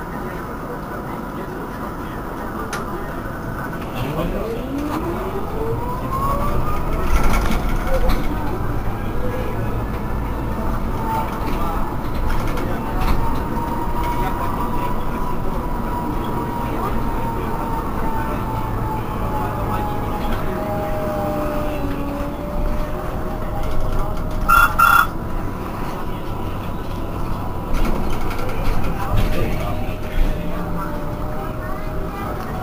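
Electric whine of an Irisbus Cristalis ETB18 trolleybus's drive, rising steeply in pitch over about six seconds over a growing low rumble, then a lower tone that slowly falls. A brief sharp clatter comes near the end.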